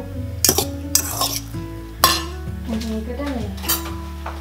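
Metal fork clinking and scraping against the inside of a stainless steel saucepan while fluffing cooked couscous, a handful of sharp clinks spread over the few seconds, with background music underneath.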